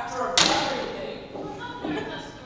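A single sharp knock about half a second in, a wooden stick banged down on the stage floor, with a short ring-out after it. An actor's voice comes just before it and again near the end.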